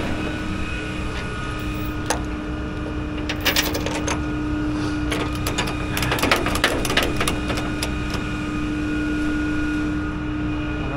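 Rollback tow truck running with a steady hum and a low rumble, with bursts of sharp metallic clicks and clatters about two seconds in, around three and a half seconds, and between six and seven seconds.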